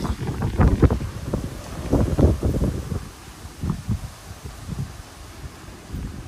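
Strong storm wind gusting and buffeting the microphone in irregular low rumbles, heaviest in the first three seconds and easing after.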